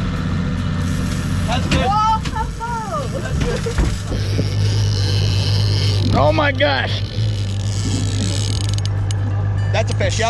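A boat's outboard motor running with a steady low hum as the boat moves, the hum getting stronger about four seconds in.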